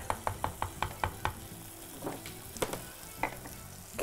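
Wooden spatula knocking and scraping against a clay pot while stirring a frying fish and brinjal masala, over a steady sizzle. A quick run of about seven knocks comes in the first second, then a few scattered knocks.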